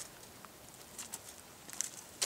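Faint, scattered crackles and ticks of light footsteps on gravel and leaf litter, a few more coming together near the end.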